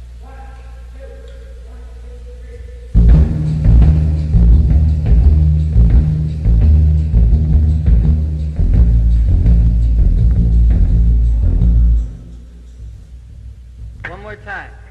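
Studio band playing a loud run-through of a backing track, heavy in the low end with steady drum hits, starting suddenly about three seconds in and breaking off about twelve seconds in. A few faint held instrument tones come before it.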